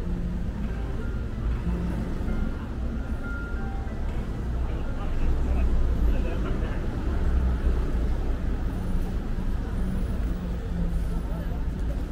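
Busy city street ambience: passers-by talking and a steady low traffic rumble that grows louder in the middle, with music mixed in.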